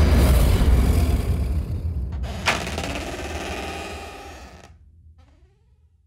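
Horror-trailer sound design: a deep, heavy rumble with a noisy upper layer, a sharp hit about two and a half seconds in, then a long fade-out, with a few faint rising tones near the end.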